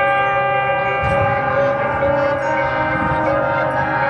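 Marching band holding a long sustained chord with a bell-like ring. The chord shifts slightly about two and a half seconds in.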